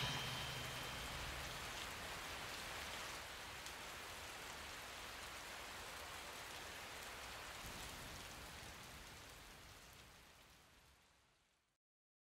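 The last of the music rings out in the first second, leaving a faint, even hiss with light crackle that slowly fades away to silence about ten seconds in.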